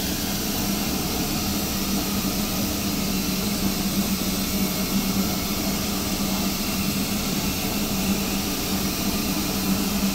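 Steady machine hum with a broad hiss, unchanging throughout.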